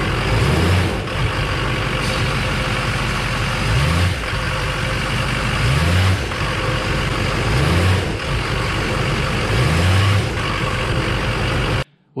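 2005 GMC Sierra 2500HD's Duramax turbodiesel V8 being revved in short blips, the pitch rising about every two seconds and dropping back between. The revs are meant to show the engine rocking on a torn engine mount.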